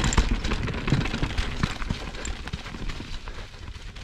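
Privateer 161 enduro mountain bike rolling fast over a rocky trail: a quick, uneven run of clicks, knocks and creaks as the bike and rider's gear jolt over rock, over a low rumble of tyres and wind, easing off near the end.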